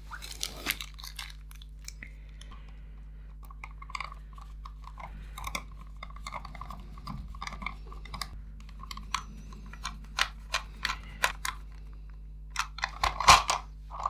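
Small screws being driven by hand with a screwdriver into the plastic shell of a 1984 Tomy Dingbot toy robot. Scattered light clicks and taps of plastic parts and tools run throughout, with a scratchy stretch for a few seconds in the middle and sharper clicks near the end.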